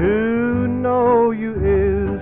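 A vintage oldies song played muffled, as if from another room: a singer slides up into a long held note with a slight vibrato over guitar accompaniment, then moves to a lower note near the end.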